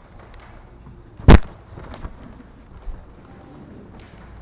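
A single sharp, loud thump about a second in, over faint room noise, with a smaller knock near the end.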